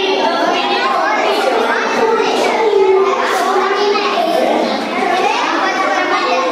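A roomful of children all talking and calling out at once, a steady overlapping chatter of young voices.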